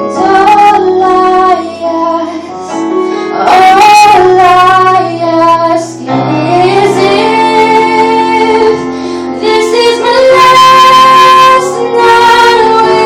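A young female singer singing live, holding long notes over a sustained instrumental backing. Her voice is loudest about four seconds in and again near the end.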